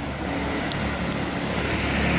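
Steady rushing road noise of a Ninebot One electric unicycle rolling along an asphalt street, with two faint ticks near the middle.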